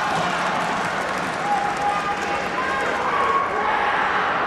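Kendo players' kiai shouts, several short high calls in a row during the face-off, over a steady murmur of voices in a large hall.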